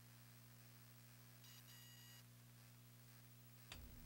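Near silence: a faint steady electrical hum, with one faint short high-pitched beep about a second and a half in.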